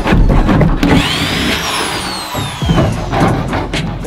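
Long-handled steel scraper chipping and scraping a rubbery Flex Seal coating off a jon boat's hull in repeated sharp strokes. The strokes are heaviest at the start and again near the end, with music and a falling whoosh in between.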